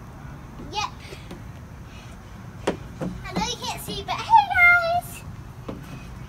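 A young child's voice calling out in short, high-pitched sounds, loudest about two-thirds of the way in, with a few sharp knocks in between.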